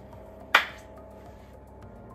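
One sharp crack made with the hands, about half a second in, over a faint steady hum.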